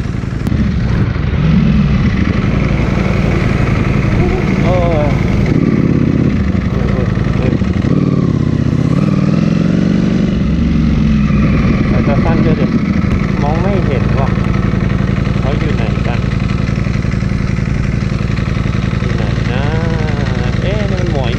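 Sport motorcycle engines running at idle, a steady low drone throughout, with the pitch wavering for a few seconds near the middle. People's voices come in over it in the second half.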